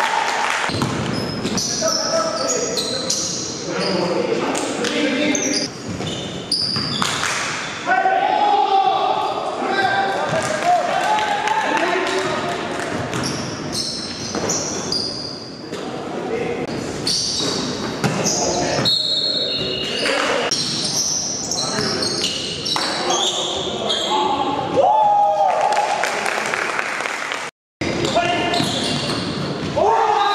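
Basketball being dribbled and bounced on a gym floor during a game, with players calling out and shouting, all echoing in a large hall. The sound cuts out for a moment near the end.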